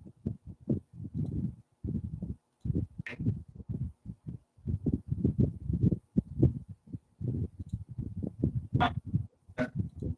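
Muffled, indistinct talking over a video-call line, heard as low, irregular bursts with almost no clear upper voice.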